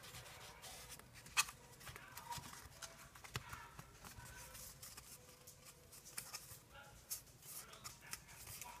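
Faint rustling of paper and a cardboard toilet-paper tube being rolled and handled on a table, with a few light taps, the sharpest about a second and a half in.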